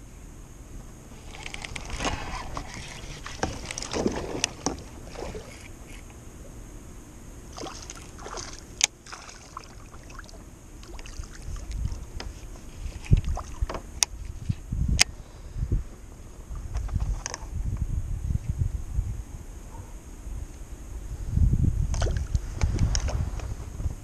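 Handling sounds in a plastic sit-on-top fishing kayak, the Lifetime Tamarack Angler, as a largemouth bass is reeled in and lifted aboard. There are scattered sharp clicks and knocks of gear against the hull, mixed with water and handling noise, and a spell of low thumping and splashing near the end as the fish comes in.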